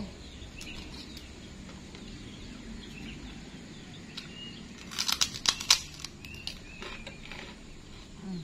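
A bite of crisp kerupuk cracker being crunched, a quick cluster of loud crackling crunches about five seconds in, with a few quieter crunches after. Birds chirp faintly in the background.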